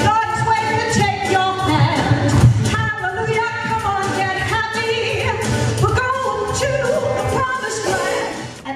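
A woman singing into a hand microphone over loud backing music with a steady beat.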